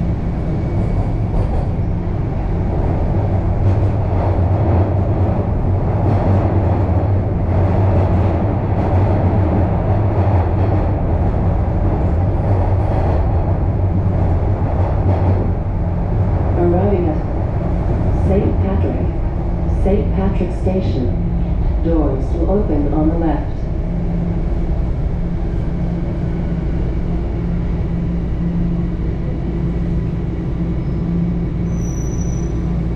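Interior of a Toronto Rocket subway car running through the tunnel: a continuous rumble of wheels on rail with a steady low hum. It eases a little in the last few seconds as the train slows into the next station.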